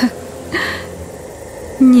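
A pause in spoken narration: a short breath about half a second in over a low steady background, then a voice starts speaking near the end.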